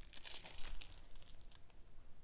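Small clear plastic bags of diamond-painting drills crinkling as they are handled, a run of irregular small crackles that thins out in the second half.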